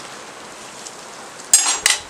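Metal kebab skewers clattering briefly twice near the end, a bright metallic clink, over a steady faint hiss.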